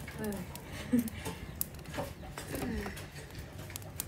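Low, brief voices with a few short clicks and knocks.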